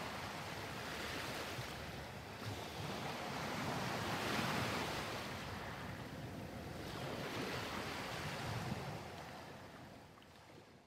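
Sea waves and wind: a steady rushing noise that swells about four seconds in and fades away near the end.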